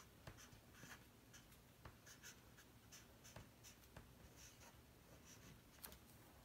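Felt-tip Sharpie marker writing letters on paper: a series of faint, short scratchy strokes, one for each pen stroke.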